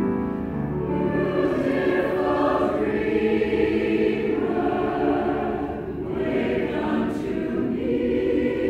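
Men's choir singing together.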